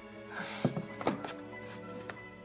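Soft background score of sustained tones, with a few dull thuds around the middle, two of them standing out.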